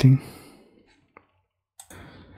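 Computer mouse clicks: a faint single click about a second in and a sharper one near the end.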